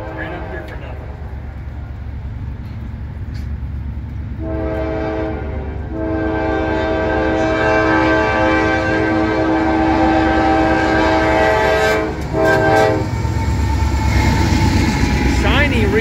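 Nathan K5LA five-chime air horn on a GE AC44C6M locomotive sounding for a grade crossing: a blast of about a second and a half, a long blast of about six seconds, then a short one. Underneath, the low rumble of the train grows louder as the locomotives draw close and pass near the end.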